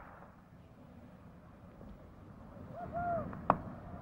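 Faint, steady cricket-ground ambience. About three seconds in comes a short hooting call in two arched notes, followed at once by a single sharp crack, typical of bat striking ball.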